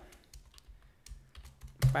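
Soft keystrokes on a computer keyboard: a few scattered clicks as a line of code is typed.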